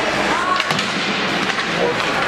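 Ice hockey play heard from the stands: steady arena crowd noise with shouts, and a few sharp clacks of sticks and puck on the ice about half a second in.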